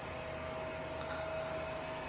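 Quiet room tone: a steady hiss with a thin, steady hum running through it.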